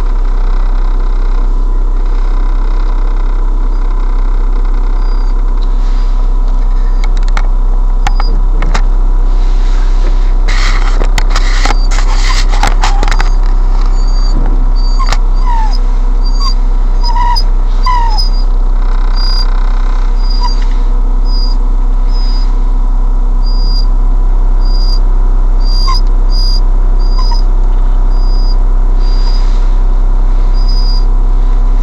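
Car moving slowly, heard through a dashcam microphone in the cabin as a loud steady low drone. A rustling, clicking noise comes in about ten seconds in, and from about five seconds on a string of short high chirps repeats every half-second or so.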